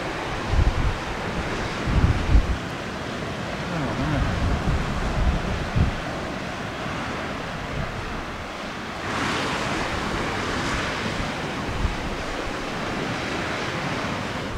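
Sea surf breaking and washing against rocky cliffs below, a steady rush that swells louder about nine seconds in. Wind buffets the microphone in low thumps, strongest in the first few seconds.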